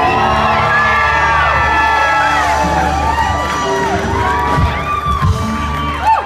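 Live band with singers holding long sustained notes to close out a song, while the crowd cheers and whoops over it. The band's low held notes stop right at the end.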